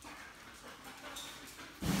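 A dog panting quietly while it searches among cardboard boxes, with a louder burst of sound right at the end.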